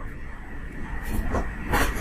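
Steady low electrical hum with faint background hiss. A short hiss of a breath or word onset comes near the end.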